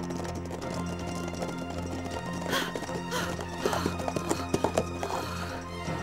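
Background music with held notes, over sound effects of horses galloping: hoofbeats, with whinnies from about halfway in.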